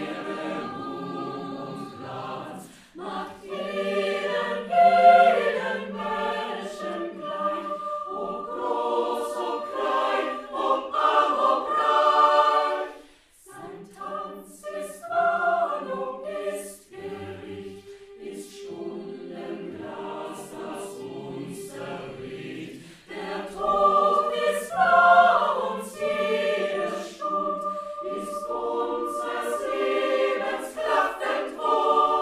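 Mixed choir of women's and men's voices singing a choral piece in parts at rehearsal: sustained chords in several phrases, with short breaks about 13 and 23 seconds in.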